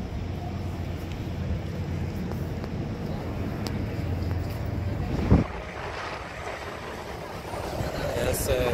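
Steady low rumble of highway traffic with wind buffeting the microphone. A single sharp thump comes about five seconds in, after which the rumble drops away.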